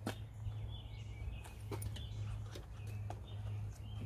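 Scattered sharp clicks and small knocks of hands working a wiring harness and plastic plug through a car's door jamb, over a steady low hum, with faint bird chirps.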